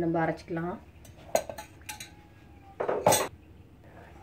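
Glass kitchenware clinking: a small glass bowl and utensils knocking against a large glass mixing bowl of dosa batter, with two sharp clinks about a second in and about three seconds in and a few lighter taps between.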